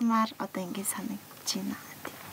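A young woman's voice: a few short, soft vocal sounds that break into a laugh near the end.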